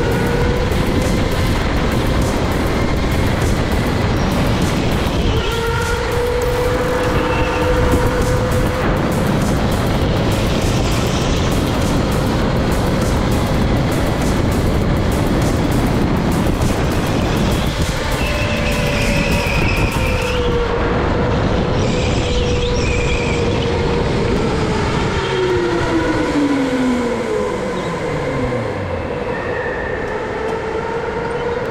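Electric go-kart motor whining steadily at speed over a rush of tyre and track noise. Near the end the whine slides steeply down in pitch as the kart loses drive and slows after its throttle cable breaks.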